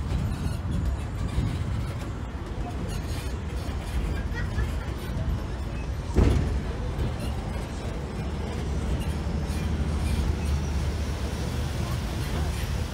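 Park tram rolling along a road, a steady low rumble of its running gear and tyres, with one sharp knock about six seconds in.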